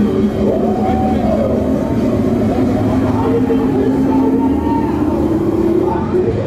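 Loud, busy nightlife-street ambience: voices of passers-by over a steady low rumble.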